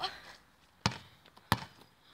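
A football bouncing twice on a hard court surface: two sharp knocks about two-thirds of a second apart.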